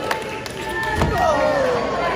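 Crowd shouting and calling out at a live wrestling show, with one heavy thud on the wrestling ring about a second in.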